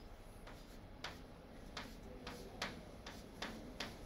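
Chalk on a blackboard while an equation is written: a faint, irregular run of short clicks and taps, about two a second.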